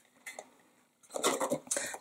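Plastic embossing folder and cardstock being handled: one faint click, then from about halfway in a second of rustling and light tapping of plastic and card.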